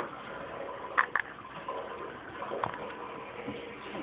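Plastic Lego pieces clicking as a part is pressed onto a small build: two sharp clicks close together about a second in, and another about a second and a half later, over a faint hiss.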